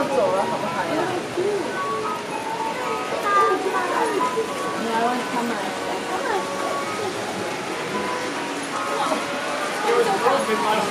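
Indistinct chatter of people with music playing in the background.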